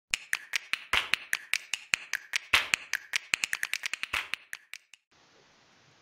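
A rapid run of sharp taps, about five a second at first and crowding closer together past the three-second mark, then fading out just before five seconds in, leaving faint room tone.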